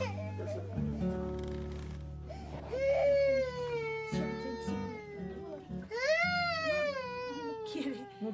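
A small child crying in two long wails, the first about three seconds in and the second about six seconds in, each falling in pitch, over soft background guitar music.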